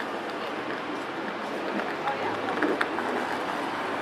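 City street ambience: a steady background hum with indistinct voices of passers-by, and a few brief clicks a little past halfway.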